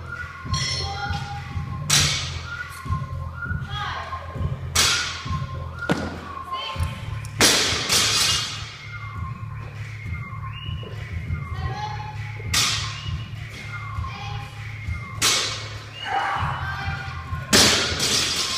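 Barbells loaded with bumper plates hitting the rubber gym floor as lifts are set down. There are about six heavy thuds, a few seconds apart, over background music and voices.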